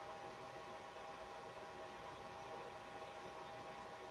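Quiet room tone: a steady faint hiss with a faint steady hum, with no distinct sound standing out.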